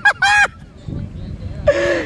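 A woman's high-pitched cries of pain after a crab (jaiba) has pinched her finger hard enough to draw blood: two short cries at the start, a brief lull, then loud, broken cries again near the end.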